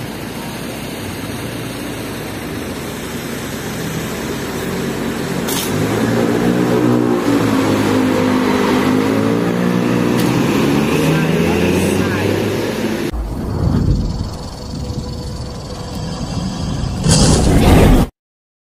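Hino RK8 bus's diesel engine pulling away, its pitch rising and falling as it accelerates through the gears. A heavy low rumble follows, ending in a loud rush of noise near the end.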